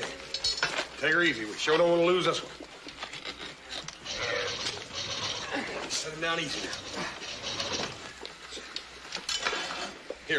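Men's voices straining and shouting wordlessly with effort, mixed with short runs of rapid ratcheting clicks from a chain hoist on a tripod, near the start and again near the end. The hoist is handling a crucible of molten iron over a sand casting mold.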